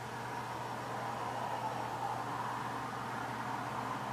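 Steady background hiss with a low, even hum underneath.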